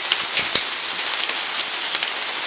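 Steady patter of rain on the cellular polycarbonate sheeting of an arched greenhouse, heard from inside, with one sharp click about half a second in.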